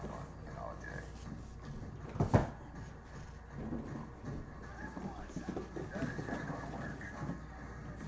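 Cardboard shipping boxes being handled and shifted, with one sharp knock a little over two seconds in; faint speech runs underneath.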